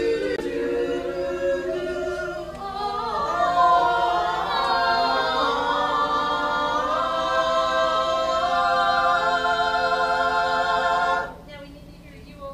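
Stage musical cast singing together in harmony, building to a long held chord with vibrato that cuts off sharply near the end.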